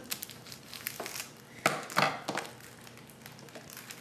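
Crinkling and rustling of a scrapbook paper pack's packaging and sheets being handled, with a few sharper crackles about halfway through.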